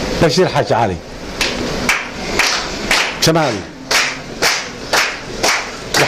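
Scattered hand clapping, about a dozen sharp claps at irregular intervals, between short phrases of a man's voice over a microphone.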